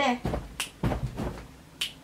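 A few sharp clicks at uneven intervals, the last one near the end.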